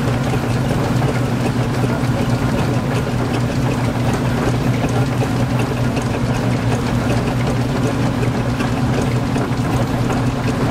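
An engine running steadily at an even speed, a constant low hum with no change in pitch.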